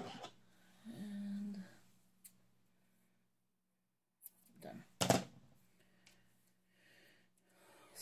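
Scissors in use on a sticker sheet, with one sharp snip about five seconds in; otherwise faint handling noise and a moment of near silence.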